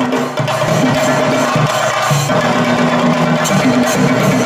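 A troupe of chenda drums beaten rapidly with sticks, over a melody of long held notes that step between pitches.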